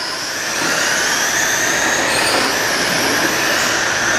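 Several RC oval racing trucks running flat out on the track, their motors and gears making a high whine that slides up and down in pitch as they pass.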